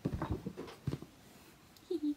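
Handling noise as a dropped toy wand is picked up: a few knocks and rustles in the first second, then a brief vocal sound near the end.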